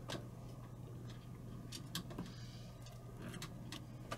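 Faint, scattered clicks and taps of a hand handling an expansion card in an open PC tower, over a steady low hum.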